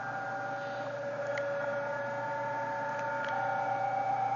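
Recorded PSK31 amateur-radio signals playing from a speaker through an audio bandpass filter: several steady data tones over a hiss of band noise, gradually getting louder as the filter's audio gain is turned up from zero.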